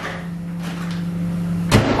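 Built-in microwave oven: a click as the door is opened, a steady low hum, then a loud clunk as the door is shut about three-quarters of the way through.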